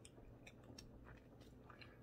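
Near silence with faint chewing: a person chewing a piece of cheese with closed mouth, a few small soft mouth clicks.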